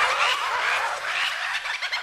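Turkeys gobbling: a rapid, overlapping stream of short warbling calls, several a second.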